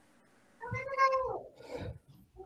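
A single short, high-pitched call, under a second long, that falls in pitch at its end. A briefer, fainter sound follows it near the end.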